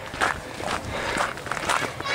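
Footsteps on a gravel path at a walking pace, four steps about half a second apart.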